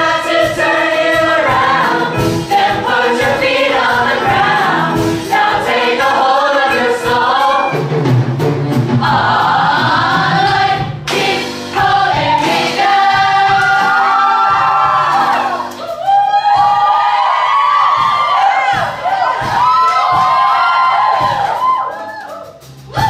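Ensemble cast of a stage musical singing a number together over a musical accompaniment with a steady beat.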